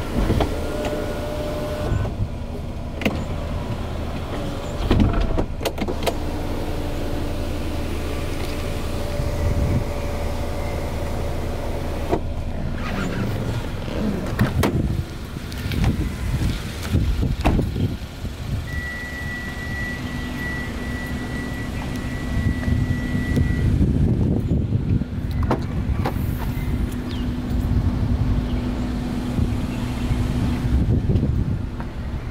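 Electric sunroof motor whining as the glass panel moves, stopping about two seconds in. Then come scattered clicks and knocks of doors and trim being handled over a low steady hum. About two-thirds through, a steady high beep sounds for about five seconds, and the end is low rumbling noise.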